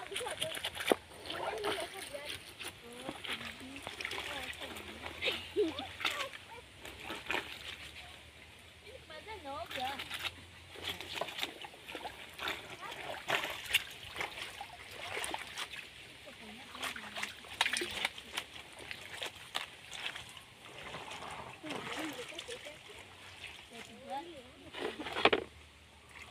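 Laundry being hand-washed in a plastic basin of water: irregular splashing and sloshing as the clothes are scrubbed and dunked. Indistinct voices come and go.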